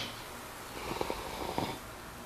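Faint breathing and mouth sounds with a few soft clicks in the middle, from a person sipping and swallowing a thick blended green smoothie from a glass.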